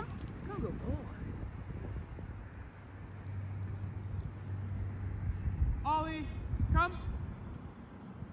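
A man calling a dog in short raised-voice calls, twice close together about six seconds in, over steady outdoor background noise.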